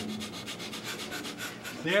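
Several people doing breath of fire, the rapid yogic breathing through the nose: short, forceful nasal breaths pumped from the navel in a fast, even rhythm.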